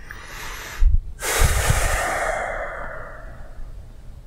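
A person taking a deep breath in, then letting it out in one long, loud exhale that fades away over about two seconds.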